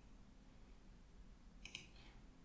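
Computer mouse button clicking twice in quick succession near the end, over near-silent room tone.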